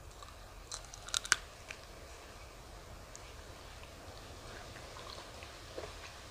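A person biting into and chewing a ripe prickly pear (cactus fruit) close to the microphone: a few sharp crunchy bites about a second in, then quieter chewing.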